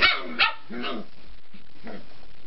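A dog giving three short play barks in quick succession, the first two loudest, while a small puppy wrestles with a big dog.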